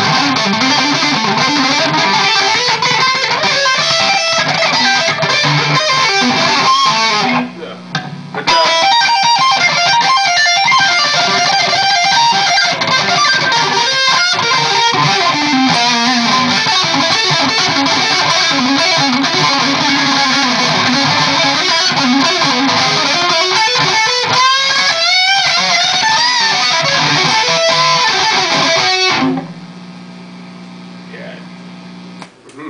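2003 PRS Custom 22 electric guitar with Dragon II humbucking pickups, played loud and distorted through a high-gain amplifier so that it screams. The lead playing includes string bends, breaks off briefly about seven seconds in, and stops about a second before the end.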